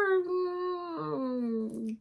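A woman's voice holding one long drawn-out vowel, a hesitation on the word "were", for nearly two seconds. Its pitch sinks slowly, and it stops just before her speech picks up again.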